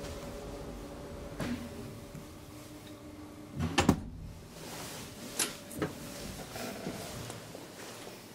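KONE traction elevator car running with a steady hum that stops about three and a half seconds in. A loud metallic clunk and clatter of the car's door and latch follows, then two sharp clicks a couple of seconds later.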